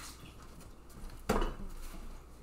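A single sharp clink of kitchenware knocked against a countertop, about a second in.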